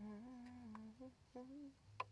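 A woman humming softly to herself: one held note of just under a second, then two short notes. A sharp click comes right at the end.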